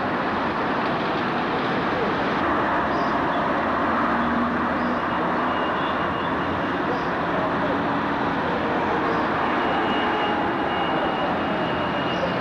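Steady rushing noise of town road traffic heard from high above, unbroken and even throughout.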